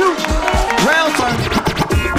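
Loud hip-hop break beat with a DJ scratching a record on a turntable: short rising-and-falling pitch sweeps over the drums.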